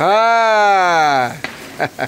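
A person's voice in one long drawn-out call, falling steadily in pitch by about an octave over just over a second, followed by a few short sharp crackles.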